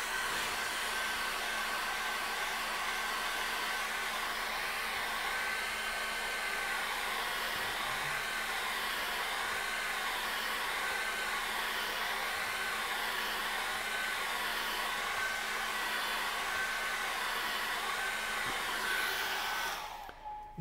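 Handheld hair dryer running steadily, a rush of air with a steady whine, used to dry a thin, water-thinned layer of acrylic paint on a canvas. It spins up at the start and is switched off right at the end.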